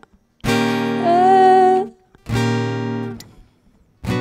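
Steel-string acoustic guitar struck in two strummed chords, each cut off into silence: stop-time hits meant to build tension before the chorus. A woman's voice holds a sung note over the first chord.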